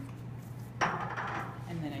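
A sudden short rustling scrape of taping supplies being handled, starting about a second in and fading within a second, over a steady low hum.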